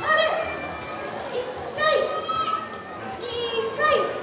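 Young children's voices calling out in high, drawn-out shouts, three times.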